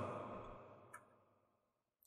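A man's voice trailing off at the end of a phrase and fading into near silence, with one faint click about a second in.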